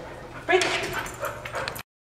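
A Golden Retriever/Collie mix dog whining and yipping, starting suddenly about half a second in and lasting about a second, then cut off abruptly near the end.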